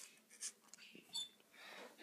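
Near silence: room tone with two faint, short sounds, one about half a second in and one just after a second in.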